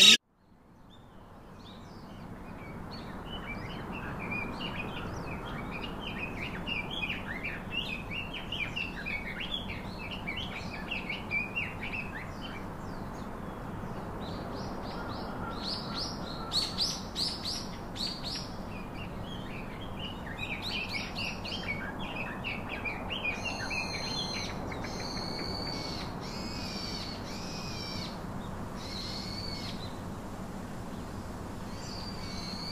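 Many small birds chirping together in a dense, steady chorus that fades in over the first few seconds. Near the end, a few louder, longer calls stand out over the chirping.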